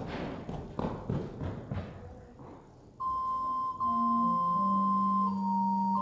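Footsteps and wooden knocks of people moving about the church, then about halfway through an organ begins playing slow, held chords.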